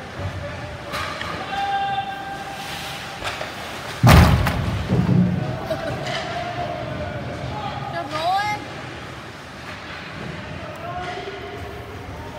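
A loud slam against the boards and glass of an ice hockey rink about four seconds in, ringing briefly in the hall. Players and spectators shout across the rink around it.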